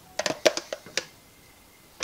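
A quick run of about six light clicks or taps within the first second.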